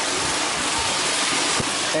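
Water rushing and churning steadily as it pours into the intake chamber of a micro hydro plant.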